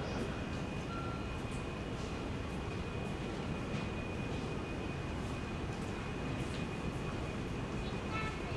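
N700A Shinkansen train approaching a station platform at low speed: a steady rumble, with a thin constant high tone running over it.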